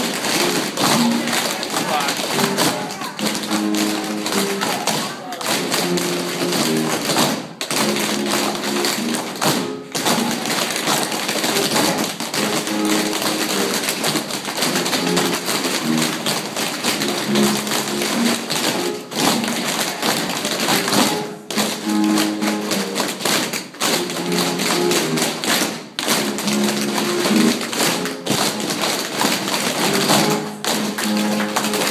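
Tap shoes tapping rapidly on a wooden floor in a seated tap chair-dance routine, over recorded music with a repeating melody.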